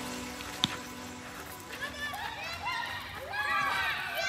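Children shouting and calling out as they play, high voices rising and falling, starting about two seconds in. Before that, background music fades out and a single sharp click sounds about half a second in.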